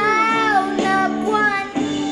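A boy singing into a handheld microphone over recorded guitar music, holding a long note that slides down about halfway through, then shorter phrases.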